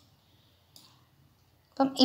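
Two faint, brief computer mouse clicks in a quiet room, one at the start and one nearly a second later, then speech begins near the end.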